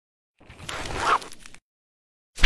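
Newspaper paper rustling and sliding as it is handled: one noisy scrape of about a second that swells and then drops away.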